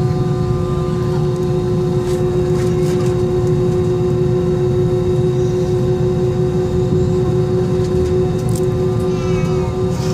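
Cabin noise of an Airbus A320-232 heard from a window seat over the wing: a steady low rumble with several held whining tones from its IAE V2500 engines running at low power.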